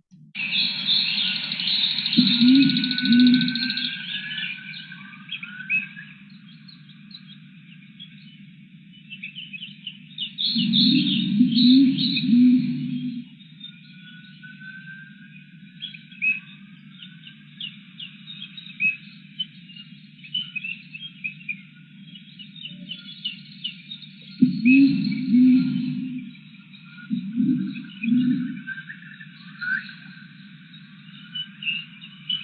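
Playback of a field recording from Hainan gibbon habitat: a dense chorus of birds and other animals chirping, with the gibbons' rising call pulses hard to pick out beneath it. The sound comes through a video-call audio share and is thin and band-limited, with louder swells about two seconds in, around eleven seconds and near the end.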